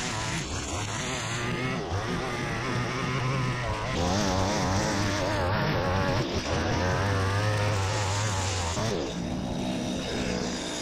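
Petrol line trimmer running at high revs, its engine note wavering as the throttle and cutting load change while the line cuts through long grass. It gets louder about four seconds in and eases near the end.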